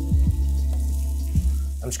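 Diced vegetables and tomato paste frying in a stainless steel pan while a wooden spoon stirs them, with a few soft knocks of the spoon against the pan. Soft background music with a steady low tone runs underneath.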